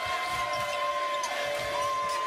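A basketball dribbled repeatedly on a hardwood court, heard as a series of soft thuds, under sustained music notes that shift pitch partway through.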